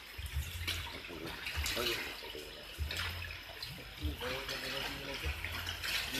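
Water splashing and bubbling in a nearly drained biofloc fish tank, with fish thrashing in the shallow water and aeration hoses bubbling; faint voices in the background.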